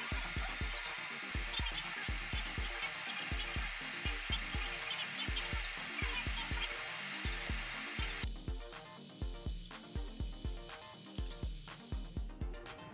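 Background music with a steady beat, over the crackling sizzle of breaded pies deep-frying in oil; the sizzle stops abruptly about eight seconds in.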